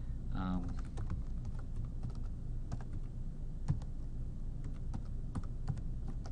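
Typing on a computer keyboard: irregular, scattered key clicks, with one louder keystroke a little past the middle.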